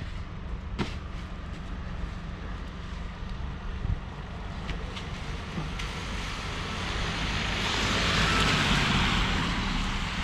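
Street traffic on a wet, slushy road: a car passes, its tyre hiss swelling to a peak about eight seconds in and easing off again, over a steady low traffic rumble.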